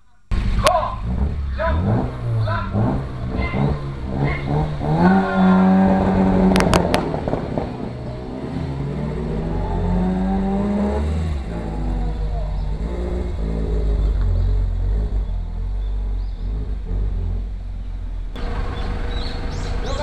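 Classic Alfa Romeo coupe's twin-cam four-cylinder engine revved hard at a standing start. It is blipped, held at steady high revs, then pulls away climbing in pitch and fades into a lower rumble as the car drives off up the hill.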